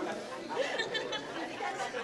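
Chatter of several guests talking over one another while practising a dance step.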